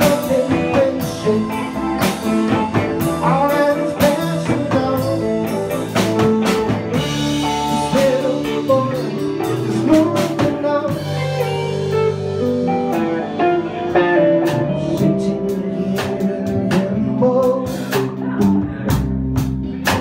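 Live blues-rock band playing an instrumental passage between vocal lines: electric guitar carrying a bending lead line over a drum kit.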